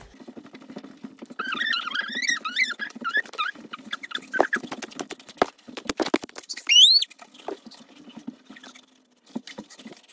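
A young child making high-pitched, wavering squeaky vocal sounds, with one loud, quick rising squeal about seven seconds in, amid taps and rubbing of hands on the phone close to the microphone.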